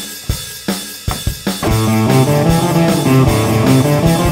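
Valeton GP-5 drum machine playing a rock beat at about 150 BPM. About one and a half seconds in, an electric guitar joins, playing sustained chords over the drums.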